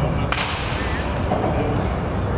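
Baseball bat hitting a pitched ball in a batting cage: one sharp crack about a third of a second in, over a steady low rumble.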